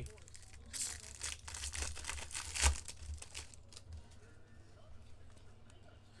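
Foil trading card pack crinkling and tearing as it is opened by hand, then the cards rustling as they are handled. The crinkling is densest from about a second in to about three seconds, with a sharp snap near its end, and a steady low hum runs underneath.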